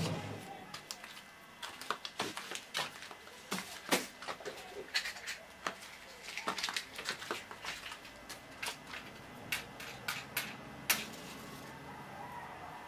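Irregular sharp clicks and crackles of fuel and paper being handled at a charcoal-and-wood hearth, with no steady rhythm, as the fire is made ready for lighting.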